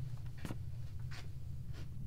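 A few brief, soft scratching sounds, three in two seconds, over a low steady hum.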